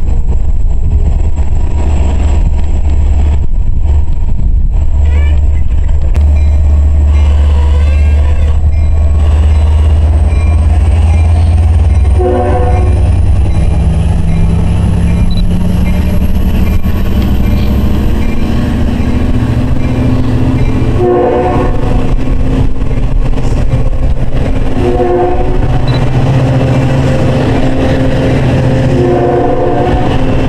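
EMD DE30AC diesel-electric locomotive working a train out of the station. Its diesel runs with a heavy rumble, then rises in pitch as it throttles up, with a high whine climbing alongside. The horn sounds once about twelve seconds in, then three more blasts in the second half, the second of those short.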